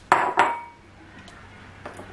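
Kitchenware clinking: two sharp clinks about a third of a second apart, each ringing briefly, then a lighter click near the end.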